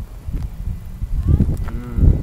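Wind buffeting the phone's microphone in low rumbling gusts, with a drawn-out low vocal sound from a person in the second half.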